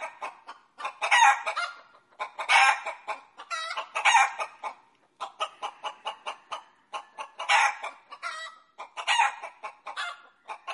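Repeated clucking calls: a loud call roughly every second or so, with quick softer clucks in between.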